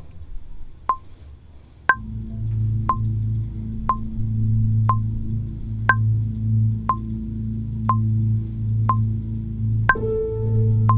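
A software metronome click track ticking once a second at 60 bpm, with a higher click on every fourth beat. About two seconds in, a low, sustained synth drone and pad come in beneath it.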